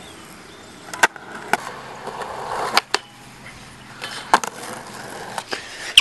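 Skateboard wheels rolling on concrete, with a board sliding across a low metal rail, and five or so sharp clacks of the board hitting down spread through the run.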